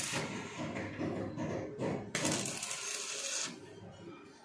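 Stick (manual metal arc) welding: the electrode's arc crackles and sizzles on steel, growing louder about halfway through, then dropping away near the end as the arc dies down.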